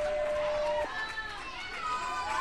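Electronic timer beep, a single steady tone lasting about a second, as the match clock reaches zero and signals the end of the final round. Crowd voices and calls carry on around it.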